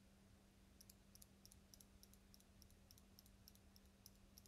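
Faint, quick metallic clicks from a metal eyelash curler being squeezed and released repeatedly at the lashes. They start about a second in and come about four a second, a little unevenly, over a faint steady hum.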